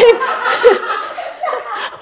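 Laughter: a short loud laugh at the start, trailing into softer, steady laughing.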